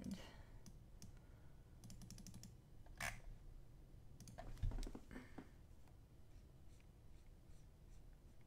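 Faint clicking of computer keys and buttons: a quick run of light clicks about two seconds in, a sharper single click about a second later, and a few more clicks with a soft thump around the middle.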